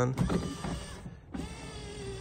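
Power window motor of a 1986 Ford Bronco II running as it drives the glass, with a steady whine; it stops briefly about a second in, then runs again.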